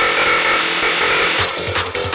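Hardstyle-style electronic dance track in a short break: the kick drum drops out, leaving a harsh, gritty sustained synth with steady tones, and the kick comes back in about a second and a half in.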